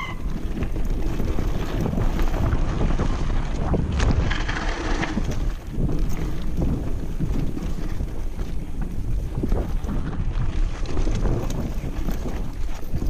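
Wind buffeting the microphone of a camera on a mountain bike ridden fast down a dirt forest trail, over the rumble of the tyres on the ground. Frequent short knocks and rattles come from the bike as it hits bumps, with a brief hiss about four seconds in.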